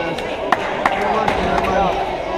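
Basketball bouncing on a hardwood gym floor: two sharp bounces about a third of a second apart, then fainter knocks, over the chatter of a crowd in a large hall.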